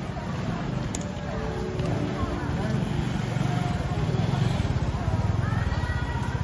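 Busy market ambience: shoppers' voices chattering in the background over a steady low rumble.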